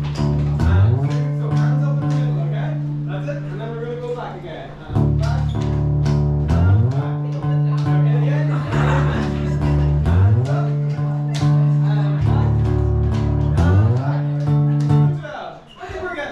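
A guitar-led Irish dance tune played live, with strummed chords and bass notes sliding up into each new phrase every couple of seconds. It stops abruptly about a second before the end.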